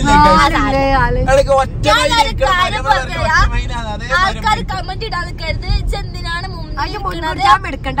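People talking over a steady low rumble of a vehicle on the move.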